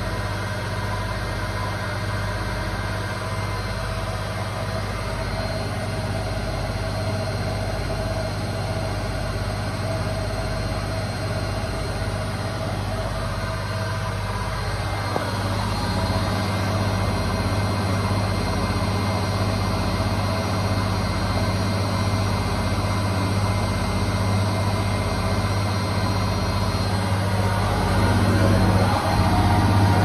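Tricity Bendix front-loading washing machine in its final spin at about 1000 rpm with an unbalanced load: a steady motor-and-drum hum with a slow, regular throb. It gets louder about halfway through and again near the end.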